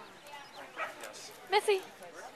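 Large long-coated dog giving two short, loud yips in quick succession about a second and a half in, with a fainter sound before them.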